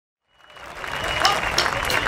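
Audience applause with crowd voices, fading in from silence over the first half-second and swelling steadily.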